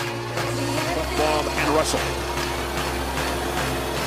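Ice hockey broadcast audio: arena crowd noise and a commentator's voice, with electronic music running faintly underneath.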